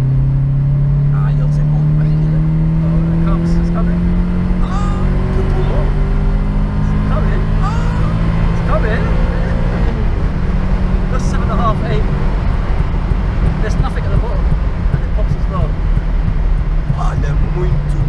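VW Golf Mk2 GTI engine heard from inside the cabin, accelerating hard with its pitch climbing steadily for about ten seconds, then dropping slightly and settling into a steady drone for the rest of the run.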